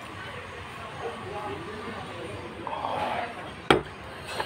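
Faint murmur of voices in a restaurant dining room, with a single sharp knock near the end.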